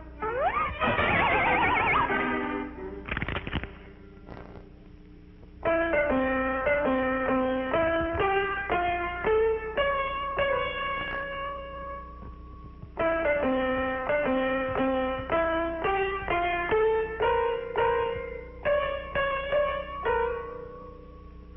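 A wavering, sliding cartoon cry for the first few seconds. Then an instrument, most likely a piano, picks out a simple melody one note at a time. The phrase is played twice and each time breaks off before its last note.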